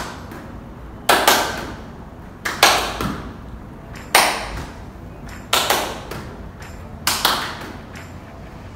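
Hand claps and the smack of a rugby ball caught in both hands, in a repeating clap-catch drill: a cluster of two or three sharp smacks about every one and a half seconds, five times.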